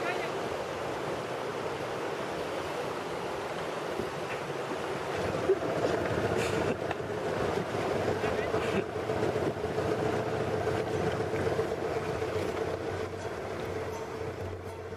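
Fast white water rushing steadily around a tandem kayak as two paddlers stroke through the current, with a few short splashes from the paddle blades.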